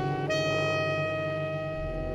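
Large jazz ensemble playing live: saxophones and other horns hold long notes in chords, and a low bass note comes in near the end.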